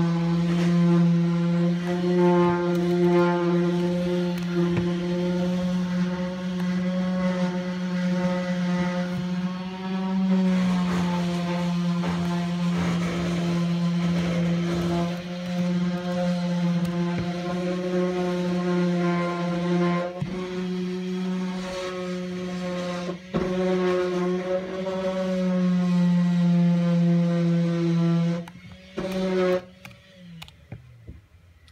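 Machinery from council works running with a loud, steady, pitched drone, a strong low hum with a stack of overtones above it, that wavers slightly in pitch and cuts off suddenly near the end.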